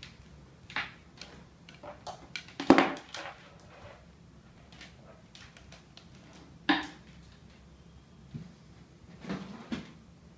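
Scattered clicks and knocks of handling: a power cable being plugged into a Pro Stringer Digital portable stringing machine, and the machine and a pair of pliers being shifted on a tabletop. The loudest knock comes about three seconds in, a sharp click near seven seconds, and a few more near the end.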